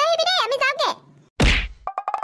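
A high-pitched cartoon voice speaks for about a second, then a single whack sound effect with a deep low thud lands about a second and a half in and dies away within half a second.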